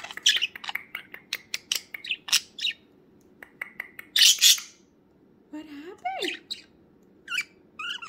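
Pet budgerigar chirping and chattering in quick, short calls, with its loudest burst a little past four seconds in.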